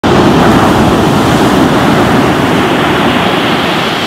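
Ocean surf: waves breaking and washing up a beach, a loud, steady rush of water.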